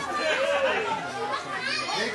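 Speech: voices talking, with chatter, in a large room.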